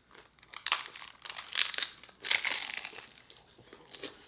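Crisp hard taco shell crunching as it is bitten and chewed, in several crackly bursts from about half a second to three seconds in.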